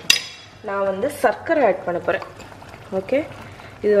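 A kitchen utensil is set down with a single sharp clink near the start, followed by a voice speaking briefly and light handling noise around a steel cooking pot.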